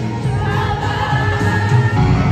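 Live pop music at a stadium concert, with many voices in the crowd singing along.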